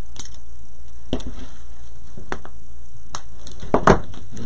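Scattered rustles and clicks of stiff deco mesh ribbon being handled and worked into a wreath board, with a louder cluster of rustling near the end.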